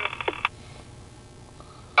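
Handheld scanner radio's static hiss cutting off about half a second in as the squelch closes at the end of a transmission, leaving a low steady hum in the vehicle cab.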